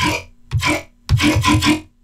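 A dubstep growl bass patch built in the Serum synthesizer plays two short notes, the second longer, each with a throaty, vowel-like growl. The delay effect leaves an extra echo tail after the notes.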